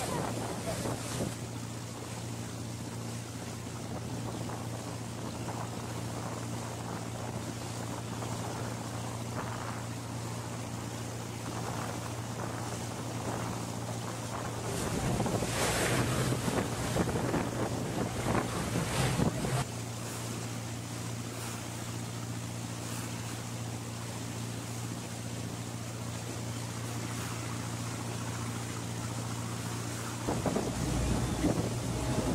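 A boat's engine running with a steady low hum, with water rushing along the hull and wind buffeting the microphone. The wind gusts louder for a few seconds around the middle.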